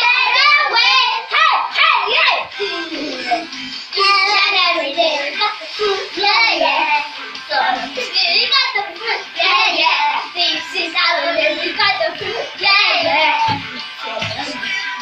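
Children's voices singing a lively song over backing music.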